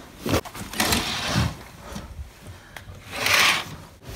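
Handling noise: rubs and knocks as the phone camera and a cardboard package are moved about, with the loudest rub a little over three seconds in.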